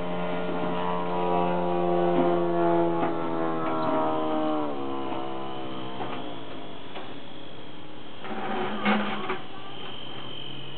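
Electric motor and propeller of a radio-controlled foam biplane whining in flight, its pitch falling a little before halfway and the sound then growing fainter, leaving a thin high whine. A brief noise near the end.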